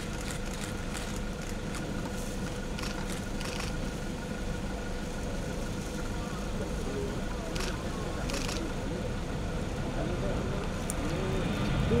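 Steady engine hum with a constant high whine, typical of a jet aircraft idling on an airport apron, under low indistinct voices and a few short clicks.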